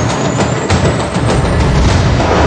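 TV news transition sound design: a loud, deep rumble with a series of sharp hits and a thin high sweep rising and ending early on.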